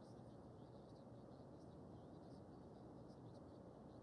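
Near silence: steady room hiss with faint, scattered light ticks of a paintbrush dabbing oil paint onto canvas.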